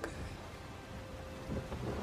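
A steady low rumble under an even hiss, swelling about one and a half seconds in.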